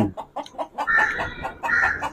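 Chickens clucking: a run of short, repeated calls, the strongest about a second in and near the end.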